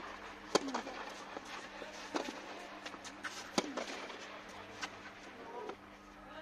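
Tennis rally: racket strings hitting the ball about every one and a half seconds, the sharpest hits about half a second in and about three and a half seconds in, with the ball's fainter bounces on the clay in between, over a steady low hum.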